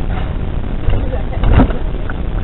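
Car engine and road rumble heard inside the cabin at low speed, with one brief, loud burst of noise about one and a half seconds in.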